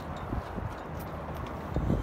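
Low wind rumble on a phone microphone, with a few faint knocks.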